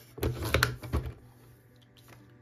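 Sliding cutter of a paper trimmer pushed along its rail, cutting a strip off a photo: a short run of scraping and knocks from about a fifth of a second in to about one second.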